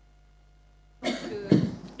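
A short cough into a microphone about a second in, followed by a brief hesitant 'euh'.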